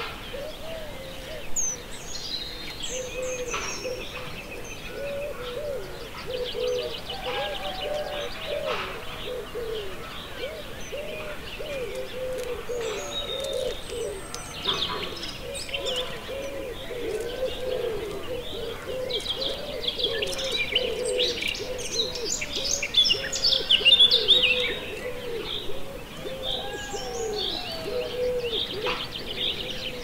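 Eurasian penduline tits calling with thin, high, falling whistles among other bird calls, busiest about two-thirds of the way in. Underneath runs a steady stream of low, repeated cooing notes.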